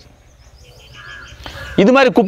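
A crow cawing faintly in the background, with a small bird's quick, high chirps above it, during a pause in a man's speech. The man's voice comes back near the end.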